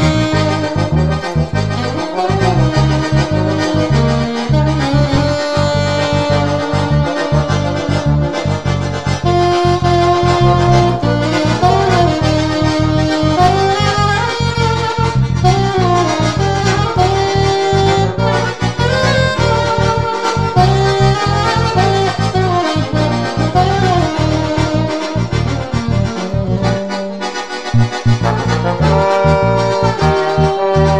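Instrumental music played by accordion, saxophone and trombone together, holding a melody over a steady pulsing bass line.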